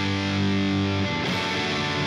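An electric guitar with overdrive plays a ringing G power chord, then moves to another chord about a second in.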